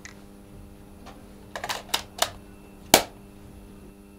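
A run of sharp plastic clicks as a Kodak Super 8 film cartridge is handled and pushed into a Super 8 camera's film chamber, a quick cluster from about a second and a half in, then one sharp click, the loudest, near the three-second mark. A faint steady hum sits underneath.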